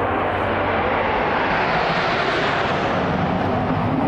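The Patrouille de France's formation of Alpha Jet trainers flying over, a loud rushing jet noise that swells to a peak about midway and begins to ease toward the end.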